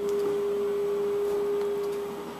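A steady, pure electronic tone held at one mid pitch without change.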